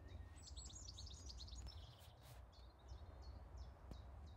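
Faint woodland birdsong: a quick run of high chirps in the first half, then short high notes repeated about once every half second, over a low steady rumble.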